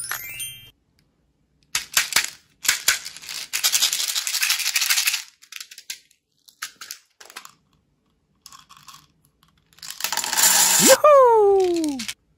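Small plastic beads rattling inside a plastic toy baby bottle as it is shaken, then scattered clicks as it is handled. Near the end a louder burst comes with a pitched tone that rises sharply and then slides down.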